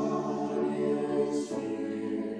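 Small mixed choir of men and women singing sustained chords, moving to a new word and chord about one and a half seconds in.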